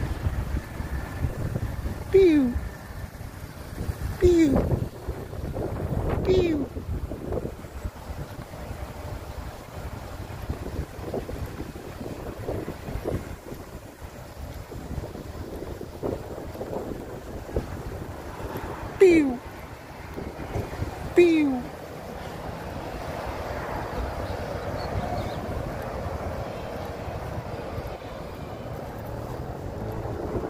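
Pedestrian crossing signal chirping: short falling tweets, three about two seconds apart early on and two more after a long pause. Wind rumbles on the microphone throughout.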